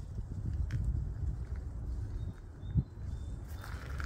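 Wind buffeting the microphone, an uneven low rumble that rises and falls with the gusts, with one soft thump late on.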